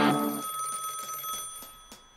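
A telephone bell ringing that stops about half a second in, its ring then fading slowly away.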